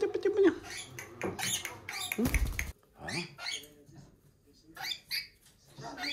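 Rainbow lorikeet chattering and squeaking in short bursts, with a brief low thump about two seconds in.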